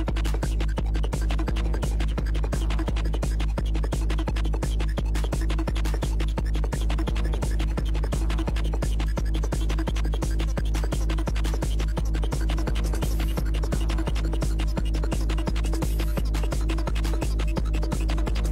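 Hardtek DJ mix: a fast, steady kick drum, about three beats a second, over a continuous heavy bassline and a steady droning synth tone.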